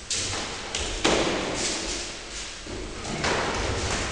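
Several thuds of kicks and punches landing in a full-contact kyokushin karate bout, the loudest about a second in, echoing in a large hall.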